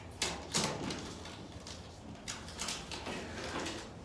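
Blue painter's tape being peeled off a glass door: two short rips in the first second, then softer crinkles of tape and paper.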